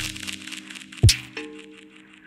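Atmospheric minimal techno: sustained low synth tones under sparse crackly clicks, with one sharp percussive hit and low thump about a second in.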